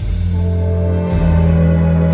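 Live symphony orchestra and jazz band playing together: the full band comes in loudly at the start over a deep bass line and drum kit, with a cymbal crash about a second in.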